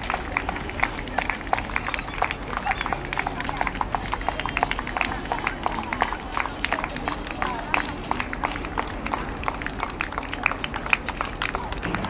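Spectators clapping in a steady rhythm, several sharp claps a second, with faint crowd voices underneath.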